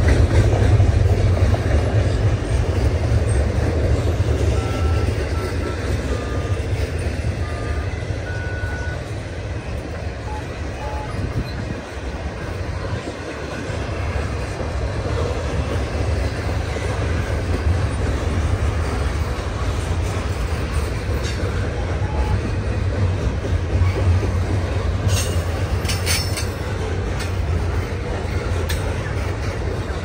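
Double-stack intermodal container train of well cars rolling past: a steady rumble of steel wheels on rail. A few brief high squeaks come about five to nine seconds in, and a run of sharp clanks about 25 seconds in.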